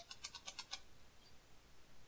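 Near silence with a few faint, short clicks in the first second, from small plastic toy figures being handled.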